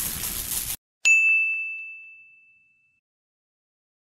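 A whooshing sound effect cuts off abruptly, then about a second in a single bright notification-style ding rings out and fades away over about two seconds.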